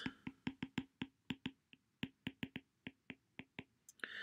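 Stylus tip tapping and clicking on a tablet's glass screen during handwriting: a faint, irregular run of short clicks, about five a second.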